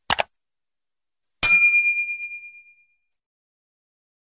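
Subscribe-button sound effects: a quick double click, then about a second and a half in a single bell ding that rings out and fades over about a second.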